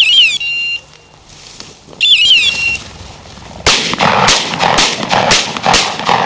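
Electronic beeper collar on a pointing bird dog sounding twice, each a falling chirp into a steady high beep about two seconds apart. In the second half comes a quick string of about six sharp cracks.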